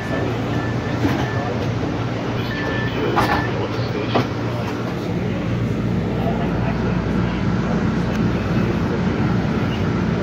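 Inside an MBTA Green Line light-rail car: short door-warning beeps, then clacks as the doors close about three to four seconds in. The train then pulls out of the underground station, its motors and wheels rumbling steadily.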